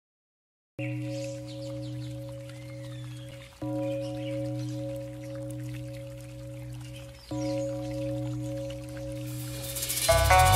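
A deep Buddhist bell of the singing-bowl kind, struck three times about three and a half seconds apart, each stroke ringing on with a slow wavering hum. Faint birdsong twitters over it, and music swells in near the end.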